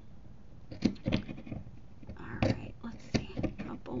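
Sharp scissors snipping short cuts into a folded fabric strip: several quick snips at an uneven pace.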